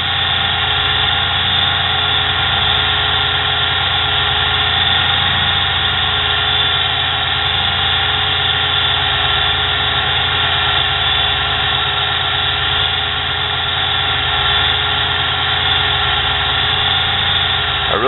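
Cheap small electric motor of a homemade mini lathe running steadily with a many-toned whine while the tool bit takes a pass along a plastic workpiece.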